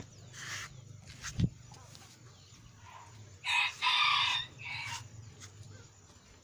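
A rooster crowing once, a call of about a second starting about three and a half seconds in and the loudest thing here. A short dull thump comes a little after one second.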